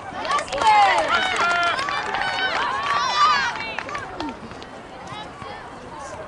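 Several high-pitched young voices shouting and calling over one another, loudest in the first three and a half seconds, then fading to scattered calls. These are the shouts of youth soccer players and sideline spectators during play.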